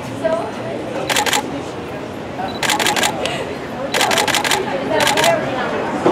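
Camera shutters firing in four quick bursts of rapid clicks over a few seconds, the rattle of photographers shooting in burst mode, over a murmur of voices.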